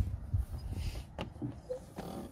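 Wind rumbling on the microphone, with one sharp metallic click a little over a second in: the car's bonnet safety catch being released as the bonnet is lifted.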